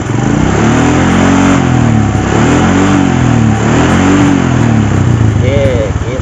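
Honda Supra X125's 125 cc single-cylinder four-stroke engine revved up and back down three times, with the cluster in neutral.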